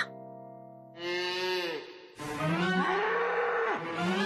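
Cartoon cows mooing, several long moos one after another. A held musical chord dies away in the first second before them.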